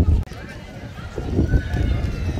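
Voices of people talking in a crowd, over a low rumble on the microphone. The sound cuts off abruptly about a quarter second in, then the voices carry on.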